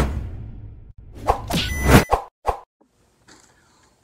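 Intro sound effects over an animated logo: a loud hit right at the start that fades out with a low rumble, then a rising whoosh that peaks about two seconds in, followed by a short sharp knock.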